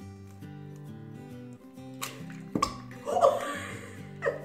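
Soft background music with steady notes; about two seconds in, a raw egg is cracked open by hand, with a couple of sharp cracks, followed by a short burst of a woman's voice laughing.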